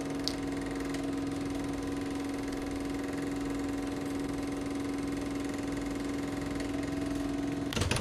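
Steady electrical-sounding hum at one pitch, with a few overtones and faint hiss: the background noise of an old-style archival audio recording.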